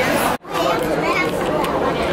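Indistinct chatter of many people talking at once in a busy indoor public space. It cuts out abruptly for a moment early on, then resumes.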